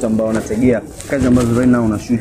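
Speech: a man talking into a handheld microphone, with only brief pauses.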